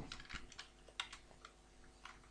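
Computer keyboard typing: a few faint, separate keystrokes, in small clusters.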